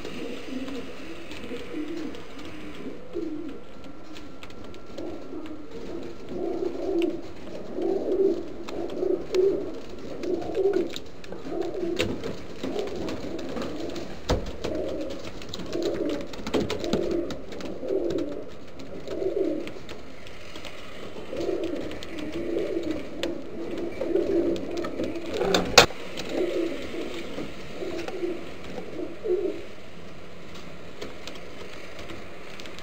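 Homing pigeons cooing over and over, low pulsing coos in repeated runs. Late on there is one sharp click.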